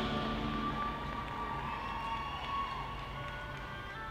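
High school marching band music: a loud held chord dies away into a soft, thin passage of faint sustained tones. Fuller held chords come back in near the end.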